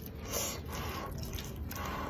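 Wooden chopsticks stirring and lifting wide noodles in a bowl of spicy broth: soft wet sounds of noodles moving through liquid, with broth dripping.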